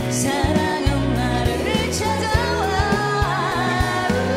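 A woman singing a Korean pop ballad live with a band, with female backing vocals, drums and bass; she sings the line '사랑은 나를 찾아와', with held notes that waver with vibrato in the second half.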